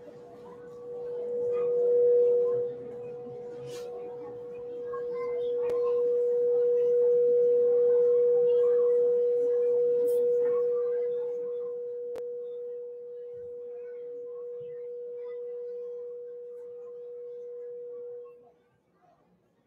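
A single steady ringing tone, swelling to its loudest midway and then easing off, with two other tones sounding briefly near the start; it stops abruptly just after the end, with a few faint clicks along the way.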